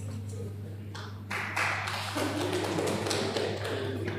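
A small audience clapping, starting about a second in and running as a dense patter of many sharp claps, over a low steady electrical hum.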